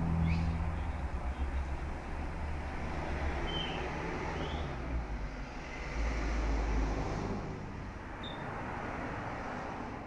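Steady background noise, mostly a low rumble with a hiss over it, a little louder about six seconds in. A few faint, short chirps sound through it.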